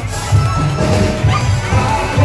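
Loud live band music played through a PA, with a steady bass beat.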